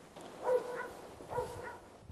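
A dog giving two short, pitched barks about a second apart.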